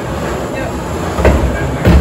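Hand-turned wooden sweepstakes drum rotating, the balls inside tumbling with a steady rolling rumble and two heavier thumps, one a little past a second in and one near the end.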